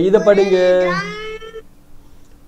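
A person's voice stretching out one word into a long, slightly falling tone for about a second and a half, then stopping.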